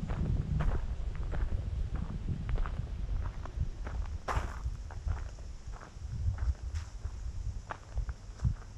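Footsteps crunching on a gravel path at walking pace, a short crunch about every half second, over a steady low rumble.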